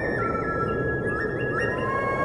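Electronic intro sting: a steady rushing noise under synthesized tones that step up and down in pitch.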